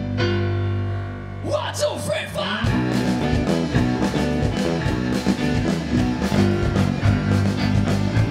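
Live rock band with electric guitar, bass and drums: a held chord rings out, then after a short fill the full band comes in just under three seconds in with a steady beat.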